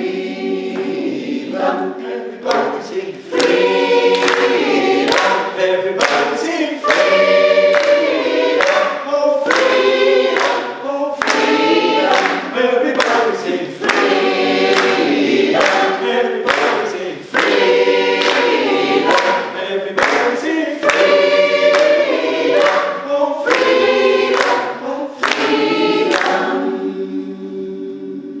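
A mixed choir of men's and women's voices singing in phrases, with brief gaps between them. The singing softens near the end.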